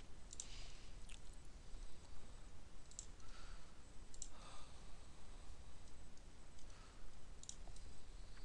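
A handful of faint computer-mouse clicks, scattered a second or more apart, over low room hiss.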